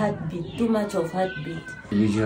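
Speech: a person talking, with pitch rising and falling in short phrases.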